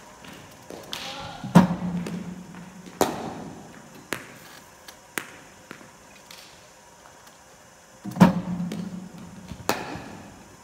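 Cricket practice in an indoor net: a bowling machine firing balls, its two loudest thuds about six and a half seconds apart and each followed by a brief low hum. Each is followed about a second and a half later by a sharp knock of bat on ball, with lighter knocks in between.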